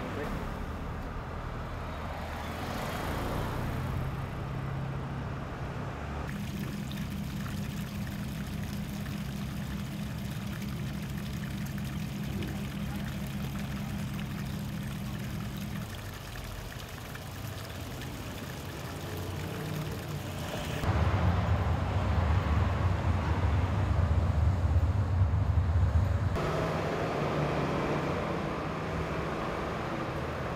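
Outdoor street sound in several abruptly changing pieces, dominated by a steady low motor-vehicle hum; the loudest stretch, a heavier low rumble, comes about two-thirds of the way through.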